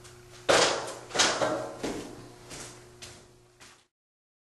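A steel drywall taping knife scraped repeatedly against the edge of a mud pan to wipe the drywall mud off the blade: six sharp strokes about two-thirds of a second apart, the first the loudest, over a faint steady hum. The sound cuts off suddenly near the end.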